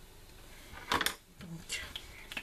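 Small metal scissors set down on a cutting mat: a short clatter about a second in, then a few lighter clicks.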